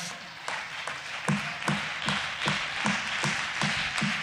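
Applause from a crowd, a steady spread of claps with a regular pulse of roughly two to three a second running underneath.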